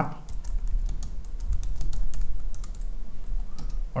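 Typing on a computer keyboard: a run of irregular keystrokes as a short terminal command is entered.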